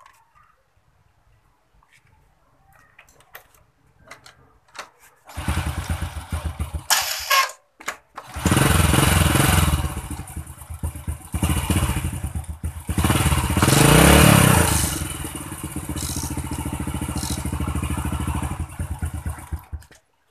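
Honda Supra motorcycle's single-cylinder four-stroke engine being started: about five seconds in it catches for roughly two seconds and dies, then starts again and keeps running, revving up once in the middle before settling into a steady idle.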